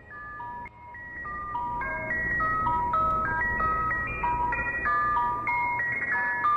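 Music: a melody of short, high, clean notes stepping up and down several times a second over a steady low drone, fading in over the first two seconds.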